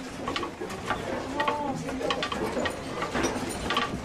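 Faint, broken voices mixed with scattered light clicks and rattles, with a short pitched call about a second and a half in.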